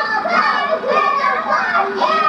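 Several young children's voices at once, overlapping and chattering with no clear words.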